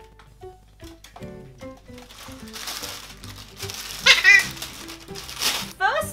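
Background music with plastic packaging crinkling, and a short harsh squawk from a male Eclectus parrot about four seconds in, the loudest sound.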